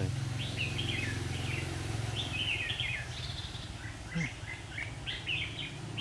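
Red-whiskered bulbuls singing, a steady run of short, quick warbled phrases, over a steady low hum.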